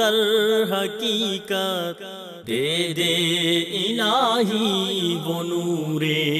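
Chanted vocal theme music with wavering, ornamented held notes. It dips briefly about two seconds in, then resumes over a low held note.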